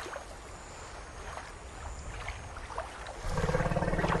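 Water sloshing and splashing as an elephant stirs and rises in a shallow pond. A little over three seconds in, a louder low steady drone with a clear pitch starts and holds.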